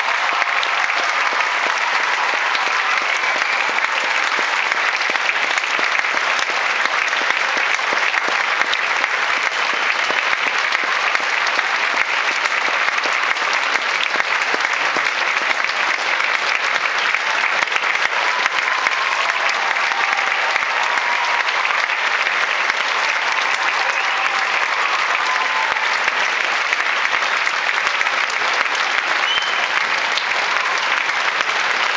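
A large concert-hall audience applauding steadily.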